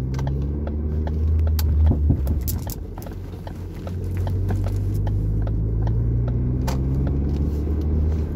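A car driving, heard from inside the cabin: a steady engine and road rumble. It dips briefly about three seconds in, and then the engine note climbs again.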